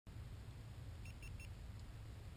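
Three quick electronic beeps from a helmet-mounted action camera being switched on, over a faint low rumble.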